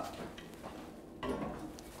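Faint handling sounds of a heavy cast-iron casserole being carried and set down on a gas hob's burner grate, with a soft low bump about a second and a quarter in.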